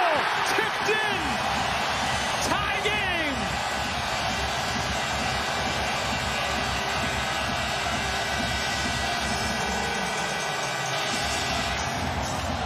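Hockey arena crowd roaring and cheering a home-team goal, a steady dense roar. A few loud shouts stand out over it in the first few seconds.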